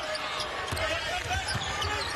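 Basketball being dribbled on a hardwood court, with short high squeaks from sneakers, over steady arena crowd noise.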